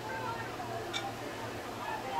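Faint background of distant voices over a steady low hum, with one faint click about halfway through.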